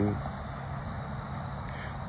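A man's voice trails off just after the start, then steady, even background noise with no distinct event.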